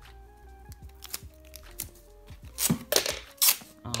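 Clear sticky tape pulled off its roll in a few loud, short rasping pulls near the end, over quiet background music.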